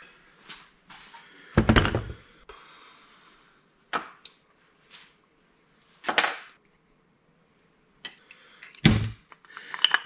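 Several separate knocks and clunks of metal jack parts being handled and set down on a workbench, the loudest about two seconds in and near the end.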